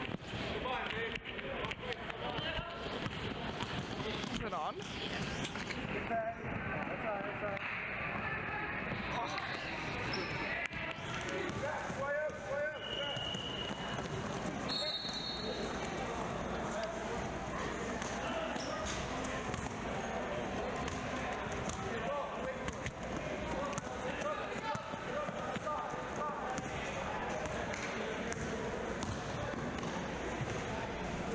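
A basketball bouncing repeatedly on a hardwood gym floor during play, under indistinct voices of players and spectators.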